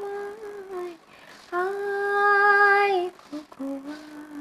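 A woman singing unaccompanied in long, wordless held notes. A note ends about a second in, a longer steady note is held from about one and a half to three seconds, and the voice steps down lower near the end.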